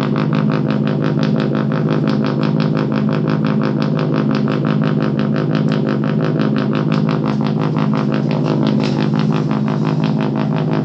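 Buzzy, lo-fi electronic step sequence from the uSeq DIY micro step sequencer prototype: rapid, evenly spaced pulses over a steady low buzzing tone, looping without a break.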